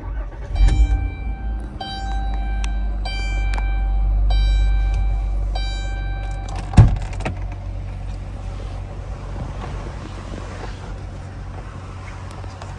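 The 2016 Dodge Grand Caravan's 3.6-litre V6 is started with the key: it cranks and catches within the first second, runs at a raised cold-start idle, then settles to a steady lower idle. A dashboard warning chime dings repeatedly for the first several seconds. A single sharp knock, the loudest sound, comes just before the chiming stops about seven seconds in.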